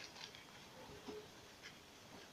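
Near silence, with a few very faint soft rustles of a plastic zip bag as crushed crackers are poured out of it into a bowl.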